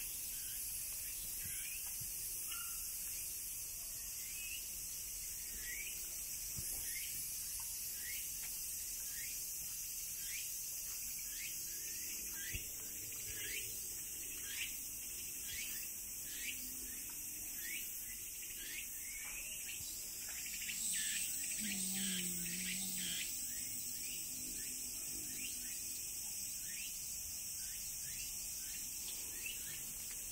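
Cicadas' steady high-pitched summer drone, with a bird calling over it in short falling chirps about once a second and a brief low sound near the middle.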